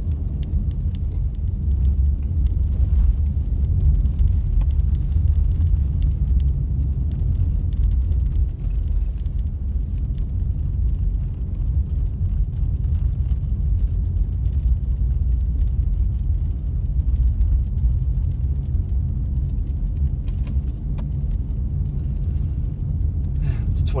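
Steady low rumble of a car driving on a snow-packed road, engine and tyre noise heard from inside the cabin.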